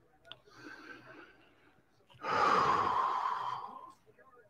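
A man's long, breathy sigh lasting nearly two seconds, starting about two seconds in and trailing off slightly lower in pitch, after a fainter breath about half a second in.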